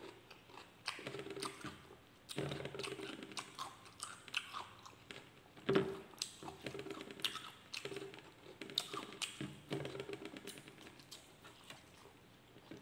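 A person chewing a mouthful of rice and egg close to the microphone: wet smacking and crackling mouth sounds in uneven bursts, with short low hums of "mm" in between.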